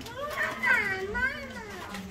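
A child's voice speaking, high-pitched and rising and falling in pitch.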